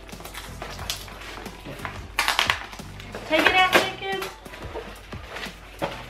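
Plastic bag and cardboard packaging being pulled and torn open by hand: a run of short crinkles and rustles, loudest about two seconds in.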